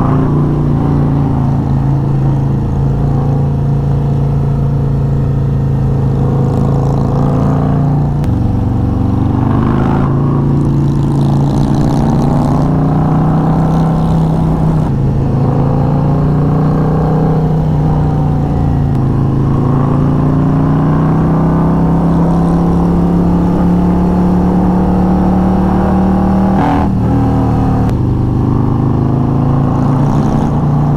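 Harley-Davidson touring motorcycle's V-twin engine running under way, heard from the rider's seat. Its note steps and glides up and down several times with throttle and gear changes through tight bends, climbing steadily in the second half and dropping sharply near the end.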